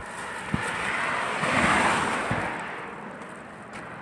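A vehicle passing by: its road noise swells to a peak about halfway through and fades away. There are two soft bumps, one early and one in the middle.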